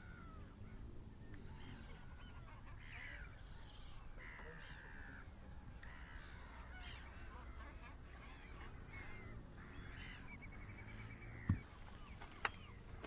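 A flock of gulls on tidal mudflats calling, with many short, harsh cries overlapping one another, over a steady low rumble. A single sharp knock sounds just before the end.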